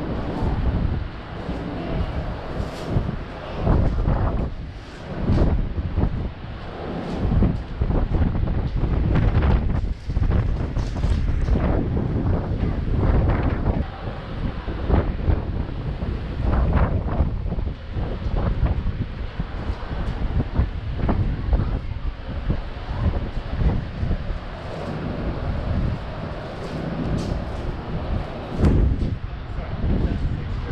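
Wind gusting over the camera microphone, a low buffeting noise that swells and drops from gust to gust.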